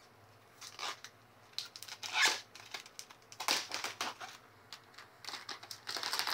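Clear plastic protective film being peeled off a new iPad, crinkling and crackling in irregular bursts, loudest about two and three and a half seconds in and quickening near the end.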